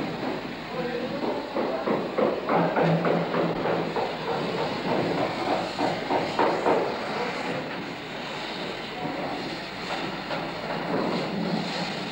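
A rail trolley carrying a wooden frame rolling along a tunnel track through a set of points, its wheels clattering over the rail joints. The clatter is loudest through the middle and then eases off.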